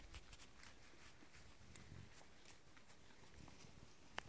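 Faint footsteps over dry brushwood and twigs: scattered light ticks and rustles, a little stronger near the start.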